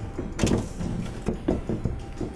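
Metal handling noise from a textured sheet-metal grow-light reflector being assembled: a sharp rattle of the sheet about half a second in, then several lighter clicks and knocks as a thumb screw and its bracket are fitted through the panel's holes.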